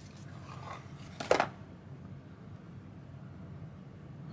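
Small cardboard soap box being opened by hand and the bar taken out: a faint rustle of card, then one short, sharp cardboard sound a little over a second in.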